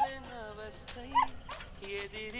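A beagle whining and yipping in short, wavering calls, with one sharp, loud yip a little after a second in.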